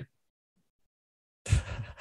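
Dead silence for over a second after a man's voice breaks off, then about a second and a half in a man's breathy laugh begins.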